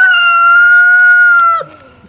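Rooster crowing loudly: the long held final note of its crow, steady in pitch, breaking off about one and a half seconds in.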